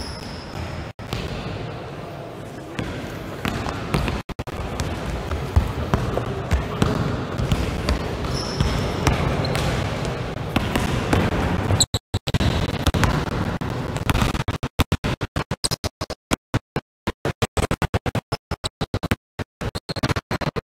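Several basketballs bouncing on a sports-hall floor as players dribble, with a hall echo. In the last few seconds the sound cuts in and out rapidly.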